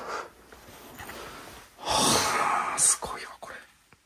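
A person's breathy, whispered exclamation, about two seconds in and lasting about a second.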